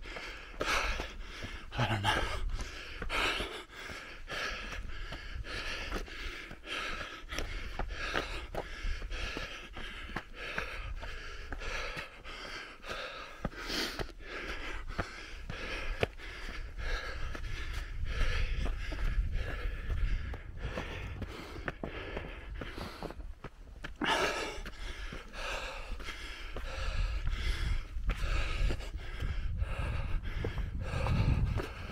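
A runner's footsteps on a dirt and rock trail, about three steps a second, with the runner's heavy breathing.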